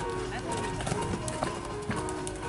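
A horse's hoofbeats on arena sand as it lands a show-jumping fence and canters on, with a few sharper knocks in the second half. Background music plays throughout.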